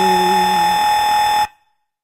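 Closing note of an electronic remix: a steady, buzzy, alarm-like synth tone over a lower drone that drops out about halfway through, then the whole sound cuts off suddenly about one and a half seconds in.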